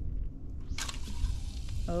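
Zebco spincast reel on a cast: a sudden high hiss about a second in as the line pays out through the reel's nose cone, starting with a brief rattle and running on, over a steady low rumble.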